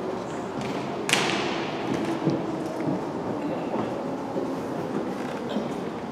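A single sharp knock about a second in, ringing on through the big arena, from the drill team working with their rifles on the hard floor; a few fainter clicks follow over a low murmur of spectators.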